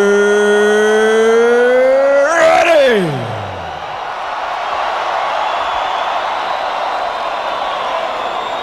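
A ring announcer's amplified voice holding one long, drawn-out 'ready' over the arena PA, slowly rising in pitch, then sliding steeply down and breaking off about three seconds in. A crowd cheers after it.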